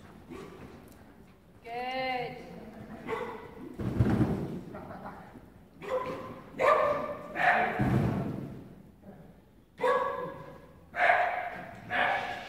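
A border collie barking in short, sharp barks several times while running an agility course, mixed with a man's shouted calls to the dog. Two dull thumps stand out about four and eight seconds in.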